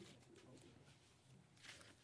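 Near silence: room tone with a faint hiss near the end.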